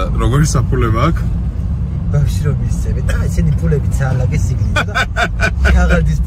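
Steady low rumble of a car's engine and tyres heard from inside the cabin while driving, under men talking and laughing.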